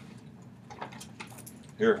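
A few small, scattered clicks and light rattles of objects being handled, then a man says "Here" near the end.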